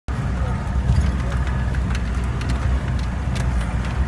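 A vehicle driving over a rough dirt track, heard from inside the cab: a steady low engine and road rumble with occasional knocks and rattles as it goes over bumps.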